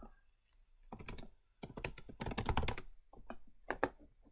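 Typing on a computer keyboard: a short flurry of keystrokes about a second in, a longer fast run in the middle, then a few separate key presses near the end.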